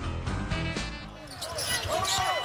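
Background rock music with a steady beat for about a second, then a cut to live arena game sound: a basketball being dribbled on a hardwood court.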